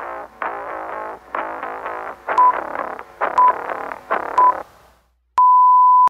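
Background music, then three short beeps a second apart followed by one longer beep at the same pitch: an interval timer counting down the last seconds of a work period. The music fades out just before the long beep.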